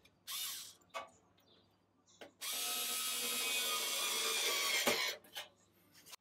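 A cordless electric screwdriver drives a screw through the postbox. Its motor starts about two seconds in, runs steadily for about two and a half seconds, then stops. It is preceded by a brief rustle and a click.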